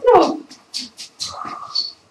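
Playful monster noises made with the voice: a cry falling in pitch, then several short breathy hisses and grunts.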